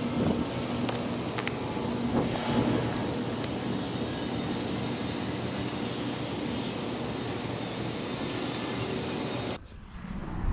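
Steady outdoor noise of wind and distant traffic with a low hum. A few brief knocks and rustles come in the first couple of seconds as the plastic-wrapped kayak is set onto the car's roof rack.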